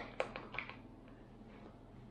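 A long-handled spoon stirring rehydrated freeze-dried chilli in its meal pouch: a few soft clicks and scrapes in the first half second or so, then faint stirring.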